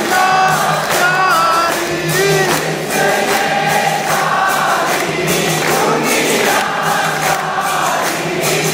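Devotees singing an aarti together in chorus, with rhythmic hand-clapping keeping time.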